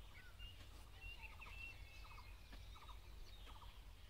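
Faint outdoor ambience: distant birds chirping, with a short rattling bird call repeated several times, about once every second or less, over a low wind rumble.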